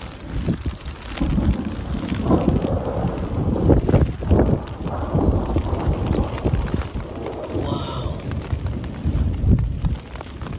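Gusty thunderstorm wind buffeting the microphone, rising and falling in strength, with rain beginning to fall.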